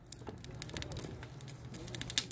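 Wood fire crackling inside a homemade rocket stove, with light knocks and scrapes as sticks are pushed into its cast-iron feed elbow; the clicks come thicker near the end.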